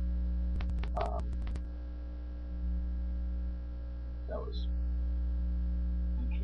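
Steady electrical mains hum picked up in a laptop's microphone recording. About half a second in comes a quick run of roughly ten clicks, lasting about a second.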